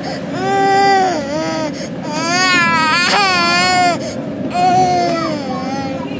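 A toddler crying in three long, wavering wails with short pauses between, the middle one the longest, over a steady low background rumble.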